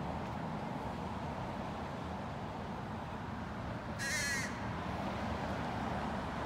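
An American crow caws once, a single short call about four seconds in, over steady outdoor background noise.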